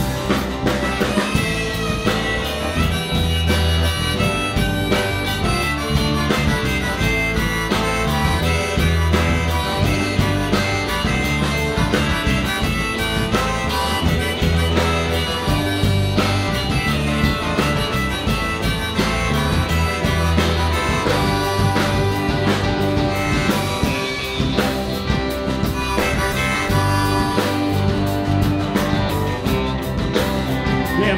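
Live rock band playing an instrumental break: a harmonica solo, blown at the microphone from a neck rack, over drums, bass and strummed acoustic guitar.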